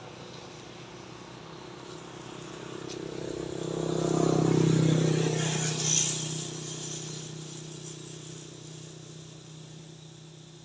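A motor vehicle passing by, its engine hum swelling to a peak about four to five seconds in and then fading away.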